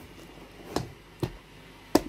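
Plastic compartment lunchbox lid being pressed down and snapped shut: three short clicks, the last and sharpest near the end as the lid seats.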